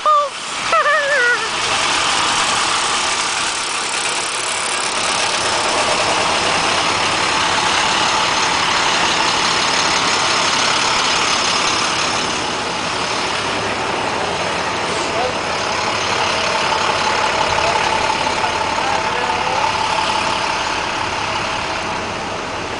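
School bus engines idling steadily, with a brief shout near the start.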